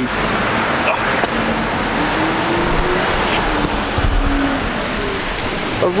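Steady hiss of street traffic on a wet road, with a motor vehicle's engine hum rising and falling in the middle.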